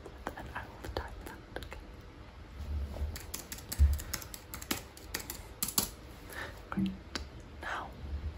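Typing on a computer keyboard: irregular runs of light keystroke clicks, entering a patient's details. A dull low bump stands out about four seconds in.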